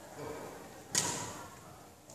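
A badminton racket hitting a shuttlecock once, about a second in: a single sharp, crisp smack.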